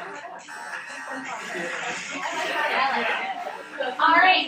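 Overlapping voices of several students talking at once, with music playing underneath.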